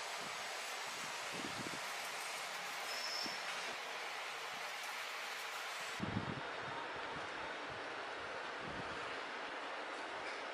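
Steady background hiss, with a few faint, soft knocks of a knife cutting through a block of paneer onto a wooden cutting board; the clearest knock comes about six seconds in.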